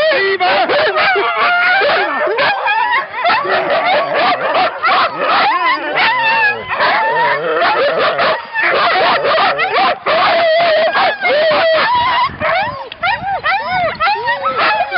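A team of harnessed sled dogs (huskies) barking, yelping and howling together, many voices overlapping without a break: the excited clamour of sled dogs before a run.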